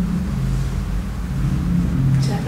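Low, dark ambient drone music: deep held notes that shift slowly in pitch over a steady rumble.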